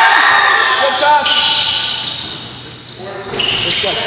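A basketball bouncing on a gym floor during a game, with players' voices echoing around the hall.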